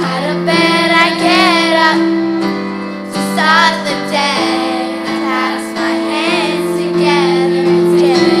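Girls' school choir singing a song, accompanied by a violin that holds long, steady notes under the voices.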